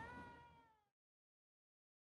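Near silence: a faint, slightly falling tone dies away within the first second, then the sound cuts to silence.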